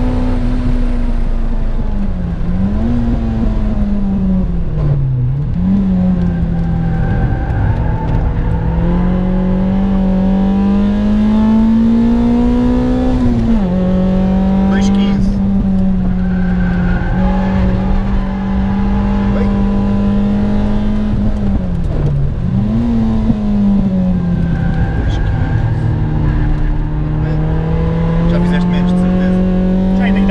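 Citroën Saxo Cup race car's four-cylinder engine heard from inside the cabin, pulling hard on track. The revs climb steadily and fall sharply at gear changes, about four times.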